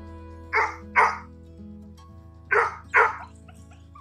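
A dog barking, two barks in quick succession about half a second in and another pair near three seconds, over steady background music.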